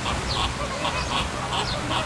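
A flock of flamingos honking, many short goose-like calls overlapping several times a second, over the steady hiss of a pond fountain.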